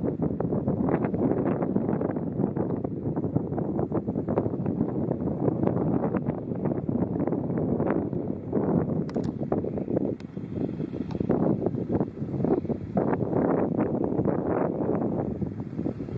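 Wind buffeting the microphone: a dense, uneven rumble of gusts that never settles.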